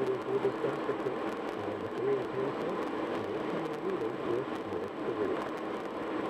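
Steady road and tyre noise of a car at highway speed, heard inside the cabin, with a muffled talk-radio voice running faintly underneath.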